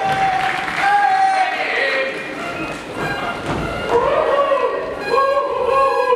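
Pitched squeals and sliding, wavering notes from comic stage performers, with some applause from the audience.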